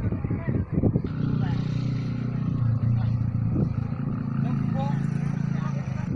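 Brief voices, then from about a second in a small engine running steadily with a low, even drone.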